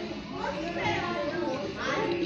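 Indistinct high-pitched voices talking, like children's chatter, with no clear words.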